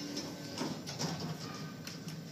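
Quiet elevator-cab interior: a faint steady hum with a few light clicks.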